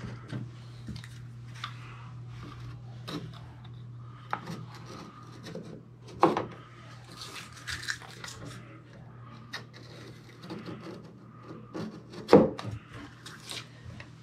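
Utility knife blade scraping and scoring blue painter's tape against a door hinge and frame as the tape is trimmed and pressed down, a run of small scrapes and ticks with two sharper knocks, about six seconds in and near the end, over a steady low hum.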